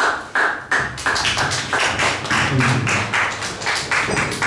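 Audience applauding, the separate claps easy to pick out.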